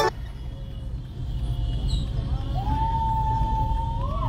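Steady low rumble of a vehicle driving on a dirt road, heard from the vehicle that carries the camera. From a little past halfway a single long tone is held and bends upward near the end.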